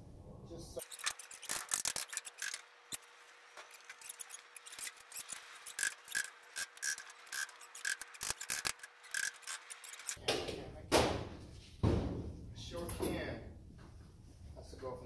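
Hand tools and lumber being handled while a wooden shelf frame is assembled: a long run of light clicks and taps, then two louder knocks near the end.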